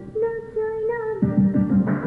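A song playing through a television: a single held note for about a second, then the rhythmic low accompaniment of plucked strings and beat comes back in.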